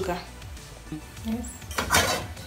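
Background music, then near the end a short metallic clatter as an aluminium saucepan is set down onto the cast grate of a gas stove.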